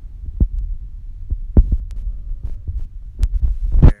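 Irregular low thumps and rumble on a phone's microphone, with a few sharper knocks: the phone being handled while it records. The loudest knocks come about one and a half seconds in and just before the end, where the sound cuts off abruptly.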